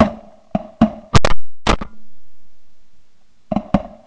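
A volley of shotgun blasts from several guns, about eight shots at uneven intervals. The loudest come a little after a second in, and two more follow near the end.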